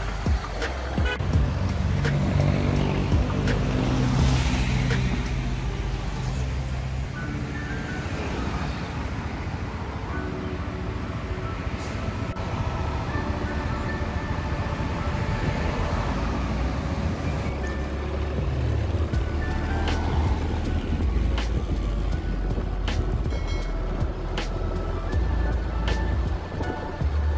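A motorcycle running through city traffic, its engine and road noise steady with small changes in pitch, under background music.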